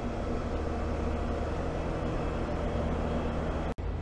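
Steady engine drone of construction machinery at work, with an even low hum and no break in the sound until a momentary dropout near the end.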